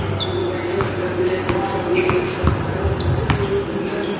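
A basketball is dribbled on an indoor gym floor, bouncing several times. Sneakers squeak briefly on the floor as players move.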